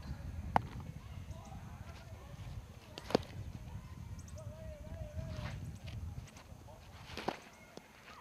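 Three sharp smacks a few seconds apart: a baseball striking a catcher's mitt and protective gear as he blocks balls thrown in the dirt.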